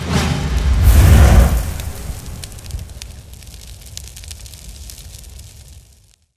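Deep boom swelling to its loudest about a second in, then a long crackling tail that fades out and stops: a sound-effect hit closing the music of a promo sting.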